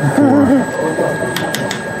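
Batch freezer running with a steady whine under a man's voice and laugh, with a few light clicks about a second and a half in.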